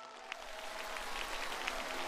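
Audience applause rising in shortly after the start and growing louder, with the last held note of the music fading beneath it.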